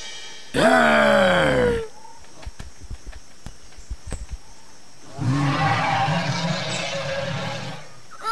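A person's voice making cartoon dinosaur roars. There is a loud call falling in pitch about half a second in, lasting just over a second, then a few faint clicks, then a longer, rougher growl of about two and a half seconds from about five seconds in.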